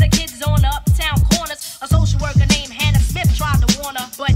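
Hip hop record playing through a DJ's turntable setup: a rapper's voice over a strong, steady bass-drum beat with hi-hats.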